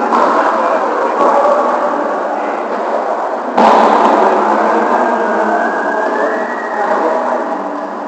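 Busy, echoing gymnasium din of many players' voices and volleyballs being hit and bounced during warm-up. The level jumps up suddenly about three and a half seconds in.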